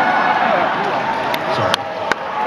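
Concert audience between songs: a din of many voices shouting and calling out at once, with a couple of sharp clicks near the end.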